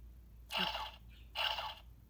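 Spider-Man Happy Meal toy's small built-in speaker playing its voice clip, heard as two brief, thin bursts of sound about a second apart.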